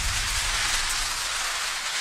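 Editing sound effect for an animated title card: a steady rushing hiss of noise, with a low rumble under it at the start that thins out after about half a second.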